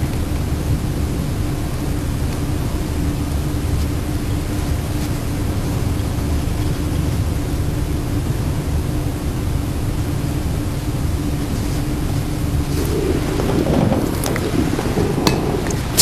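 Steady rumbling background noise with a constant low hum, the recording's noise floor while the narration pauses; a few faint clicks near the end.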